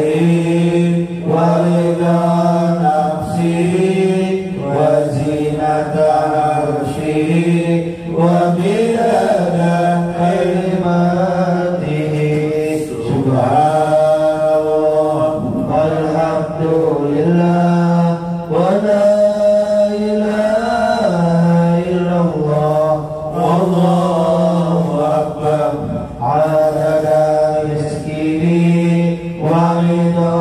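A group of men chanting Islamic devotional dhikr in slow, unbroken melodic phrases over a steady low held note.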